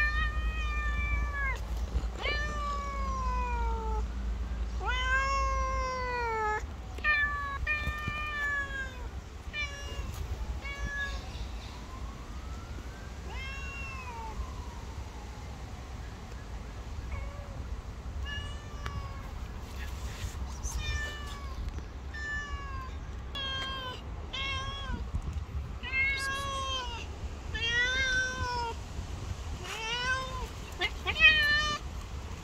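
Stray cats meowing over and over, a meow every second or so, each call rising and then falling in pitch, with a lull around the middle.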